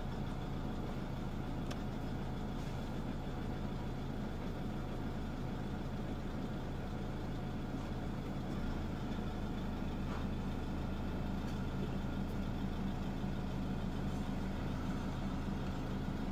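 Iveco van's engine idling steadily with a low, even hum, heard from inside the cab.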